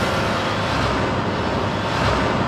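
A sound effect for the animated title logo: a loud, steady rush of noise over a low rumble.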